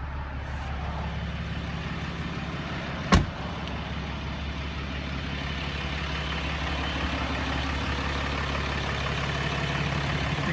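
The 2014 Ram 3500's 6.7-litre Cummins turbo diesel idling with a steady low hum. A vehicle door slams shut once, about three seconds in.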